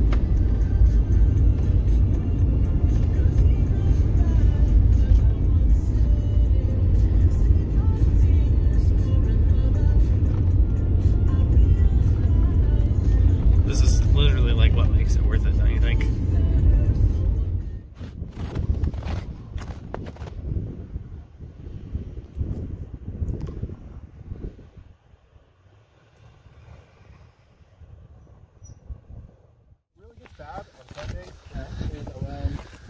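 Steady low road and engine rumble inside a moving pickup truck's cab, with music playing over it. About eighteen seconds in it cuts to much quieter outdoor sound with scattered short knocks and rustles.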